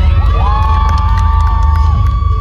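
Audience screaming and cheering, with several high-pitched shrieks that rise and then hold for over a second, over a steady low rumble.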